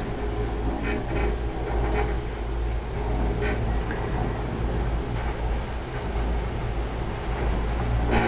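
Steady low rumble inside a moving gondola cabin as it runs along its cable, with a few faint ticks in the first few seconds.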